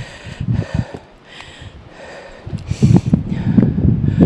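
Heavy, rapid breathing of an exhausted hiker climbing steep stone steps at high altitude, a breath every half second or so. Wind buffets the microphone underneath, louder from about halfway through.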